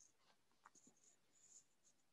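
Near silence, with a few very faint small ticks.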